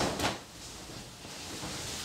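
A blanket swishing through the air as it is flung up and over a person's head and shoulders: two quick swishes right at the start, then a softer, steady rustle of the fabric.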